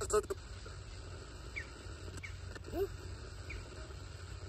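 Retro Box spirit box, a portable radio sweeping through stations, giving a steady hiss with a couple of sharp clicks at the start and brief chopped snatches of sound.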